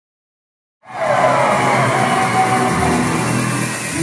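Loud live pop music from a concert sound system, with fans screaming over it, cutting in suddenly just under a second in after silence.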